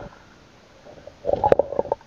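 Muffled gurgling and sloshing of river water around the camera, with a burst of knocks and clicks a little past a second in.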